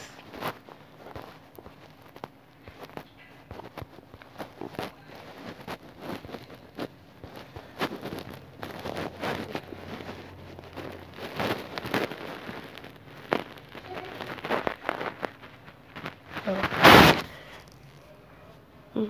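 Scattered light clicks and taps at an irregular pace, as fingers tap and scroll on a phone held close to its microphone, with one loud short burst of rustling noise near the end.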